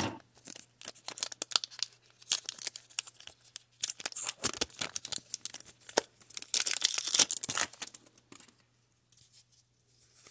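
Foil wrapper of a Pokémon card booster pack being torn open and crinkled by hand: a run of short crackling rips, densest about two-thirds of the way through, stopping shortly before the end.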